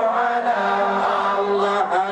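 Large group of men chanting Acehnese meulike, a Maulid dhikr, in unison. Their voices move to a new pitch about half a second in and hold one long note.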